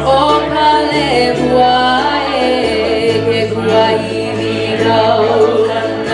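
Live band music: a woman and a man singing together in long, sustained notes over ukulele and electric bass, the bass holding long low notes that change a few times.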